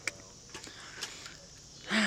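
Quiet outdoor background with a few faint clicks, ending in a woman's sigh whose pitch falls.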